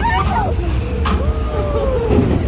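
Riders on a small spinning roller coaster letting out long, wordless screams and whoops that rise and fall in pitch, over a steady low rumble from the moving ride.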